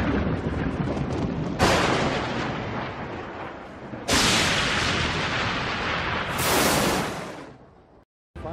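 Intro sound effects of thunder and booms: loud crashes that start suddenly about one and a half and four seconds in, each dying away slowly, then a bright hissing crash near the end that fades out to nothing.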